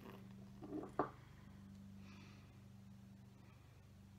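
A glass dropper clicks once against the neck of a small cosmetic elixir bottle about a second in, just after a short soft handling sound. A steady low hum runs underneath.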